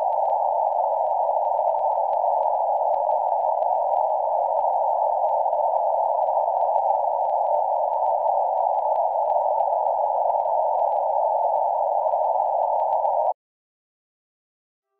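Loud, steady hiss of television-style static, narrowed to a mid-pitched band, with faint crackles running through it; it cuts off suddenly near the end.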